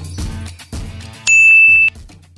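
Background intro music with a beat, then, a little over a second in, a loud bright ding: a single notification-bell sound effect, held for about half a second before cutting off.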